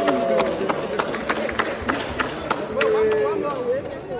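A small group of people clapping irregularly, with voices calling out and cheering over the claps.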